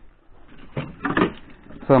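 Plastic top cover of an Indesit SB 1670 refrigerator being shifted and handled, an irregular rustle and knock of plastic parts.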